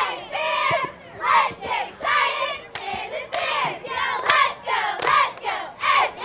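A high-school cheerleading squad shouting a cheer together in rhythmic chanted syllables, with sharp claps among the lines.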